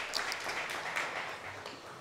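Audience applause, faint and dying away.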